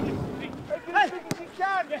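Footballers' short shouted calls during a training drill, with wind rumble on the microphone at first and one sharp strike of the ball a little past a second in.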